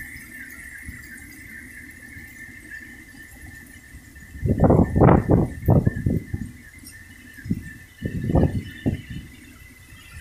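Heavy rain falling steadily, with a steady high tone running through it. Two clusters of loud, short bursts of noise break in, the first about halfway through and a shorter one near the end.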